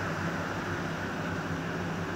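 Electric fan running: a steady airy hiss with a low hum underneath.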